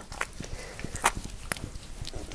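Wet hands rubbing and patting a face as an oil-based cleansing balm emulsifies with water: irregular soft, wet clicks and smacks.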